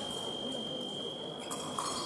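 A fencing scoring machine sounding one long, steady, high-pitched electronic tone. Two short clicks come near the end, over low hall noise.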